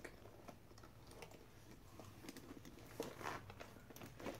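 Near silence with faint, scattered light clicks and a soft rustle, about three seconds in, of things being handled.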